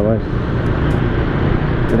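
Wind rushing over an action camera's microphone on a moving Yamaha scooter, with the scooter's engine running steadily at a low road speed.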